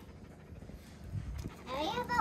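Quiet outdoor background with a faint knock a little past the middle, then a voice starting up near the end.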